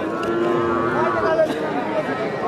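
A calf moos once, a steady held call of about a second, over crowd chatter.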